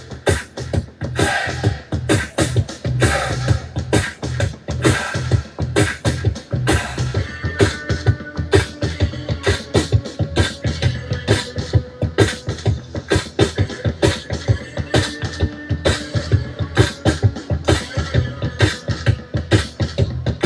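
Music with a fast, steady beat and heavy bass.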